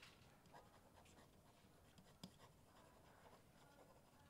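Near silence with the faint scratching and light taps of a stylus writing on a screen, one tap a little louder a little after two seconds in.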